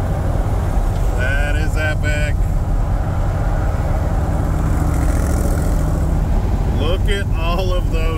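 Steady low drone of a C3 Corvette at highway speed, heard from inside the cabin: V8 engine, tyre and wind noise. Brief voice sounds come about a second in and again near the end.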